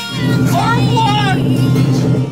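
A loud, low horn blast lasting about two seconds and cutting off abruptly, with a wavering high call over its middle and music behind it.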